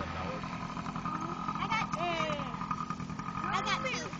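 Engine of a small youth dirt bike running at a steady, even throttle, heard at a distance, with voices talking over it.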